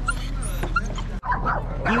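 Dogs barking and yipping in short, high-pitched calls, with a sudden break a little past a second in.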